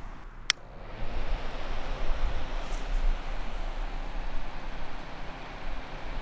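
A sharp click, then a small clip-on electric fan running with a steady rush of air.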